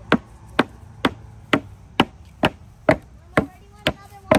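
A hammer striking the wooden boards of a raised garden bed frame as it is assembled: about nine even, sharp blows, roughly two a second.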